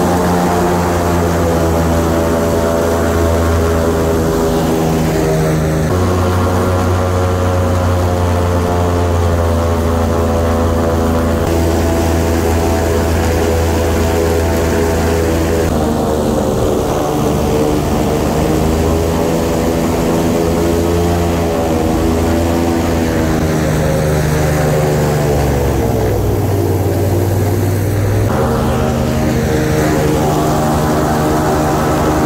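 Airboat's engine and caged air propeller running loud at speed, a steady drone whose pitch steps up and down several times, about 6 seconds in, around the middle and again near the end.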